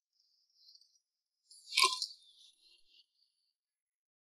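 One short splash of shallow paddy water about two seconds in, trailing off in a brief trickle, as hands scoop through the water and mud. A faint high hiss comes before it.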